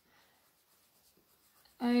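Faint scratching of a coloured pencil on paper, shading small swirls.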